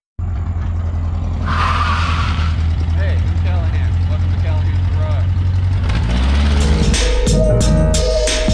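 A car engine running with a deep, steady note and a brief rise about a second and a half in. About six seconds in, a music track with a beat comes in over it and takes over.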